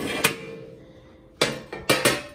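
Metal clanking as the drip tray of a countertop air fryer oven is pulled out and handled: one knock shortly in, then two sharp clanks close together near the end.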